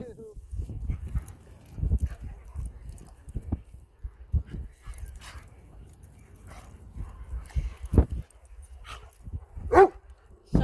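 Dogs play-fighting: irregular scuffling and bumps with dog barks and whimpers, a heavy thump about eight seconds in and a short sharp call just before the end.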